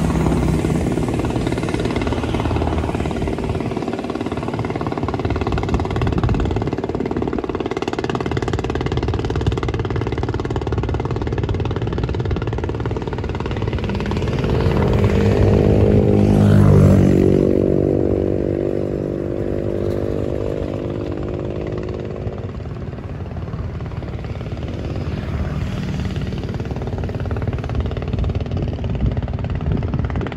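Vehicle engines running steadily, with one vehicle passing close a little past halfway, its engine note swelling to the loudest point and then fading.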